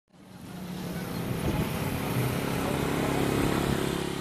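Road traffic dominated by the engine of a passing motorcycle taxi, fading in over the first second or so and then running steadily.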